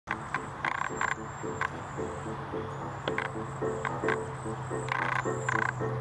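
Frogs croaking in a steady rhythm, about two to three croaks a second, with thin, very high cedar waxwing calls above them. A low steady hum joins about two seconds in.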